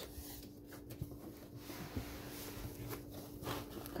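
Faint rustling and scraping of foam packing as a 3D printer's metal gantry frame is worked loose from its foam insert, with a few light ticks. A low steady hum runs underneath.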